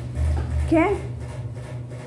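Electric fan running with a steady low hum, and a single short spoken word partway through.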